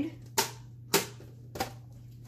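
A metal tin box handled on a table and its lid opened: three sharp clicks about half a second apart.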